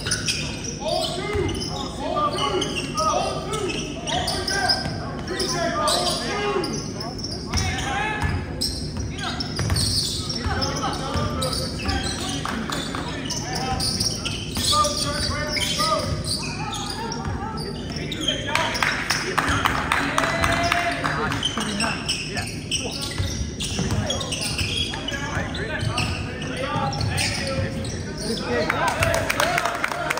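Basketball being dribbled and bounced on a hardwood gym floor during play, with players' and spectators' voices carrying through the large gym.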